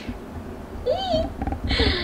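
A short meow-like animal call about a second in, rising and then falling in pitch, with a second, shorter call near the end.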